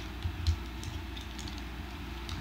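Faint plastic clicks and handling noise as the parts of a Transformers Combiner Wars Streetwise figure are moved, the most distinct click about half a second in, over a low steady hum.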